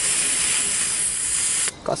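Green gas hissing steadily from an inverted can into a G36C gas-blowback airsoft magazine as it is charged. The hiss cuts off suddenly near the end, when the magazine takes no more gas.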